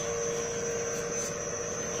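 Electric motor-generator set running steadily under a lamp load, with a constant electrical hum and a thin high steady whine.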